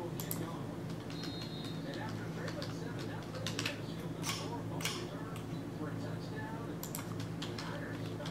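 Computer keyboard typing: scattered, irregular keystroke clicks, a few seconds apart and sometimes in quick pairs, as numbers are entered into a spreadsheet. A steady low hum runs underneath.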